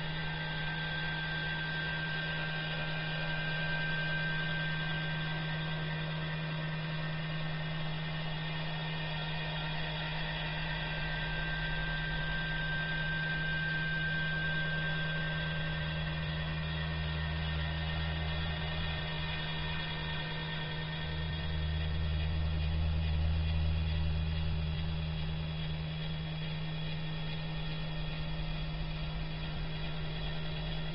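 Steady low hum with faint steady high tones in thin, low-bitrate audio; a deeper rumble swells through the middle and fades again.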